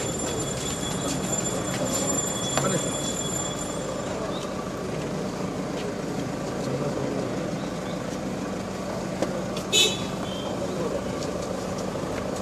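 Outdoor crowd murmur and street noise around a car, with a steady low hum. About ten seconds in, one short high-pitched beep, the loudest sound here.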